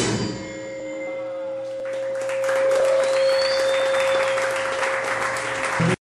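A rock band's last chord stops and a single amplified note rings on steadily. About two seconds in, the audience starts applauding, with a whistle, until the sound cuts off suddenly at the end.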